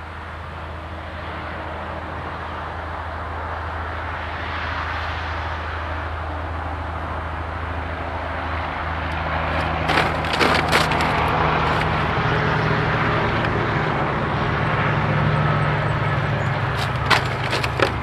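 Horse's hooves stepping through loose plastic debris, crackling and crunching, with clusters of sharp cracks about ten seconds in and again near the end, over a steady noise and low hum.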